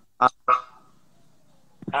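A man's short hesitation sounds ('uh') heard over a video-call connection. The second trails off into a thin held tone that fades, and after a quiet gap speech starts again near the end.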